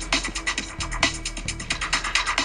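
Rapid ratchet-like clicking, about ten clicks a second, over music: an edited transition sound effect.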